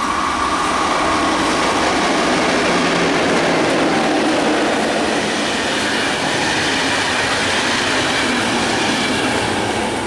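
MÁV class 630 (V63) electric locomotive and its passenger coaches passing close by at speed. The wheels run over the rails with a steady loud rush and some clickety-clack.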